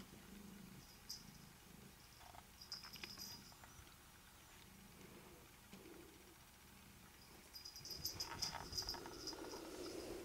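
Faint, high jingling from a cat's collar tag in a few short spells while the cat bats a hair tie on carpet. It gets louder near the end, with rustling and soft thuds as the cat trots away.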